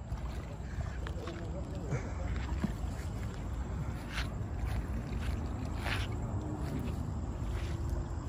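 Wind rumbling on the microphone over shallow water lapping at a rocky shoreline, with short splashes about four and six seconds in as a wading man reaches into the water among the rocks.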